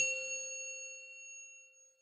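A single bright chime struck once, a bell-like logo sting that rings out in several clear tones and fades away over about two seconds.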